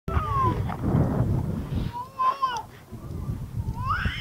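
A dog whining during play: several short, high whines that slide up and down in pitch, the last rising near the end, over a low rumble.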